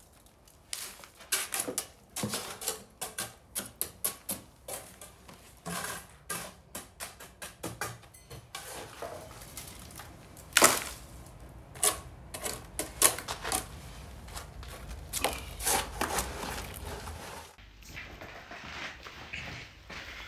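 Wet rapid-set cement being scooped from a bucket and packed into a channel in a concrete screed over buried pipes: irregular scrapes and taps, several a second at times, with a few louder knocks about halfway through.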